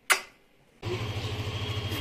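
A short click, then from just under a second in a motor scooter's small engine running at idle with a steady, even low pulse.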